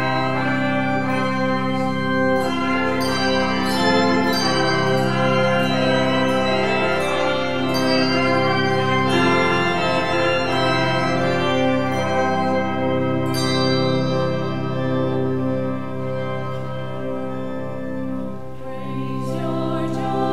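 Handbell choir and brass ensemble playing a festive hymn introduction: full, sustained chords with ringing bell strikes, continuous throughout.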